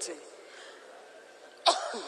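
A woman coughs once into the podium microphones, a single short sharp cough near the end, after a quiet pause in her speech.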